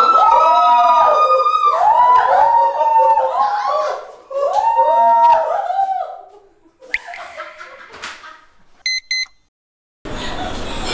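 A loud, nasal Korean shawm (taepyeongso) melody with bending, gliding notes, the reed music of pungmul, fading out about six seconds in. Two short high beeps follow near the end.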